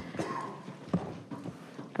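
Audience members getting up from their seats and walking out of a meeting chamber: shuffling, bags and clothing rustling, and a few soft knocks, over quiet room noise.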